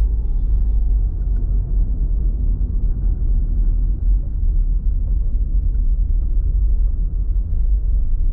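Steady low rumble of a car driving along a street, heard from inside the cabin: engine and road noise.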